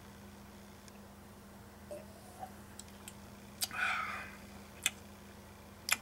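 A man quietly tasting bourbon from a Glencairn glass: a sharp click, then a short breath out after about four seconds, and a light clink of the glass near the end. A steady low hum runs underneath.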